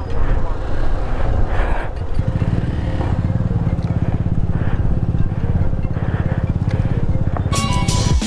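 Motorcycle engine running at low speed, heard from on board the bike, with a steady low pulsing from about two seconds in. Music comes in near the end.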